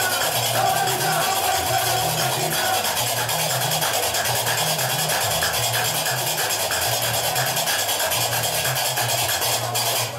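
Gnawa music: a guembri (sintir) bass lute plays a repeating low bass line under the fast, steady clatter of qraqeb iron castanets. The playing stops suddenly at the very end.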